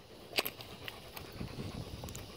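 A dog close by taking a chicken-wing treat from a hand: a few faint clicks, then low, soft rustling.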